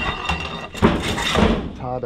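Scraping and rustling as a cover panel is shifted against the frame of a reptile enclosure, loudest in the middle, with a short vocal sound near the end.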